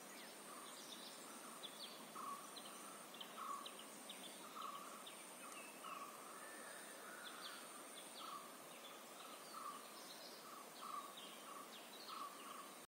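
Faint birds calling: one repeats short low notes roughly once a second among scattered quick high chirps, over a steady thin high-pitched whine.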